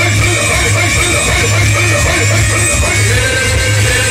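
Loud stage music with a heavy, repeating bass beat and a wavering melody over it, played through a loudspeaker system. A held note comes in near the end.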